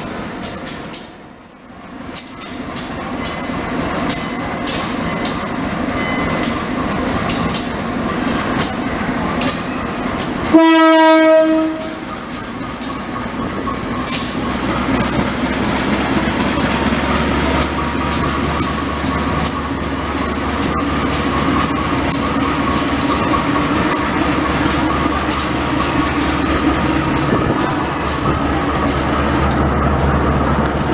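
Diesel locomotive sounding one loud horn blast of about a second and a half. Then its engine rumbles louder as it rolls slowly in alongside the platform, with rapid clicking from the wheels on the track.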